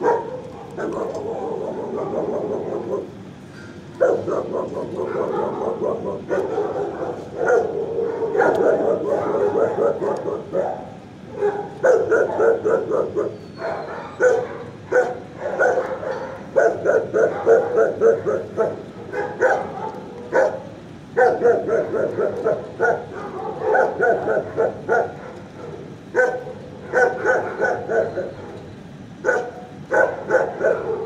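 Dogs barking in a shelter kennel block, in long dense stretches broken by a few short pauses.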